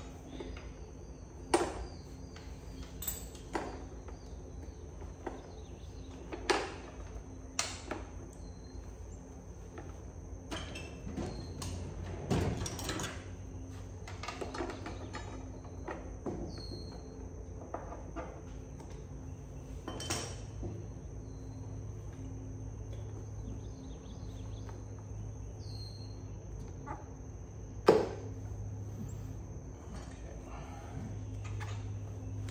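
Intermittent clicks and knocks of hand tools and metal parts as work is done around a dirt bike's carburetor, with the sharpest knock near the end.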